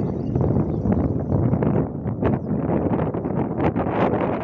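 Wind blowing across the microphone in uneven gusts.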